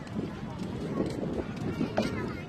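Indistinct people's voices talking over outdoor background noise.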